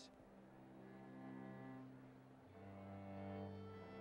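String quartet playing soft, sustained bowed chords; about two and a half seconds in the chord changes and a low cello note comes in under it.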